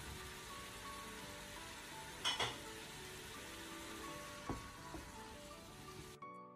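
Tomato paste and spices sizzling steadily in hot oil in a stainless steel pot while a wooden spoon stirs them. The spoon knocks sharply against the pot twice a little over two seconds in, and once more, fainter, later on. Soft background music runs underneath.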